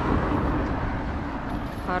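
Outdoor town background noise: a steady low rumble and hiss of road traffic.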